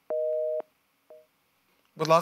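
Telephone busy signal coming through the studio's phone line: a steady two-note tone for about half a second, then a short blip of the same tone about a second in. The call being put on air has not connected.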